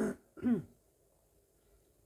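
A man clearing his throat within the first second: a short sharp rasp, then a brief voiced grunt that falls in pitch.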